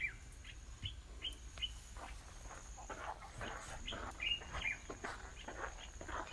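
Faint bird chirps: short, quick notes that fall in pitch, repeated at irregular intervals.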